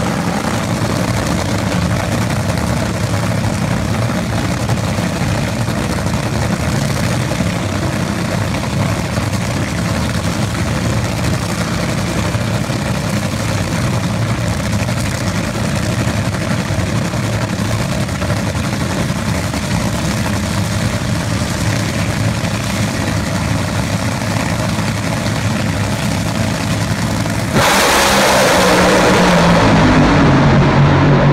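Four nitro-burning drag racing cars at the starting line, their engines running with a loud, steady rumble, then launching together about two and a half seconds before the end in a sudden, much louder blast of engine noise.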